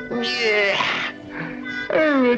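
Orchestral cartoon score with two short wavering sounds that fall in pitch, one just after the start and a louder one at the very end, cry-like or meow-like in character.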